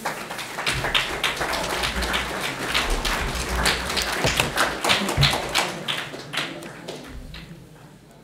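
Audience applauding: a dense patter of hand claps that thins out and fades over the last couple of seconds.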